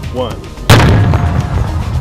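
A single detonation of about 40 grams of C-4 plastic explosive set off as an open-air blast: one sudden, very loud boom under a second in, followed by low rumbling.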